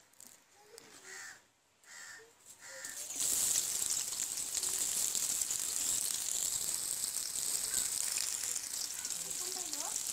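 Sliced onions dropped into hot cooking oil in a large aluminium karahi, starting a loud, steady sizzle of frying about three seconds in.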